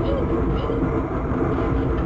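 Human centrifuge spinning under load, with a steady loud rumble and a rider's voice wavering over it.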